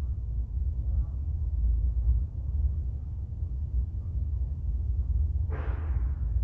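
Low, steady rumble of handling noise on a handheld camera's microphone, with a short rustle near the end as a hand touches the knitted shawl.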